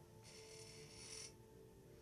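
Near silence broken by one faint, hissing breath drawn in through the nose, lasting about a second, as a meditation breathing exercise begins.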